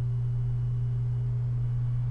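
Steady low hum, one constant tone with no change, in the background of a screen recording. A faint higher tone fades out about halfway through.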